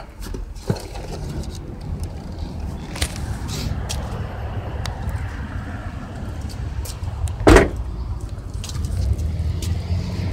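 Steady low vehicle rumble with a few light handling knocks and one loud thump about seven and a half seconds in.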